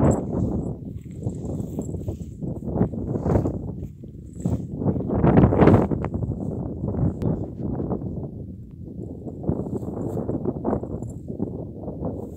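Horses moving and grazing close to the microphone in a grassy pasture: irregular rustling and munching noises, with louder noisy bursts about three seconds and five and a half seconds in.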